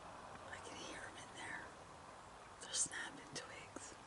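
Faint whispering: a person's voice whispering a few indistinct words, with hissing 's' sounds clustered in the second half.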